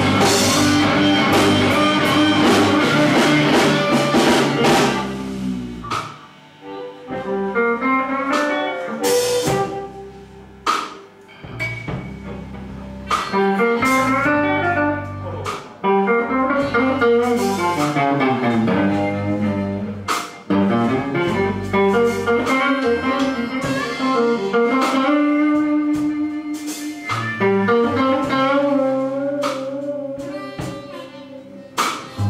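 Live blues band with electric guitar, drum kit and upright bass. The full band plays for the first five seconds or so, then drops back to a sparse stretch of bending electric guitar lines over light drums and bass that builds up again toward the end.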